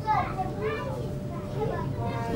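A high-pitched child's voice calling out briefly over the low, steady hum of a slowly moving passenger train carriage.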